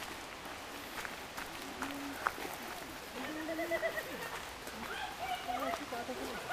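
Footsteps on a gravel path, with short irregular crunches, and people's voices talking in the background from about three seconds in.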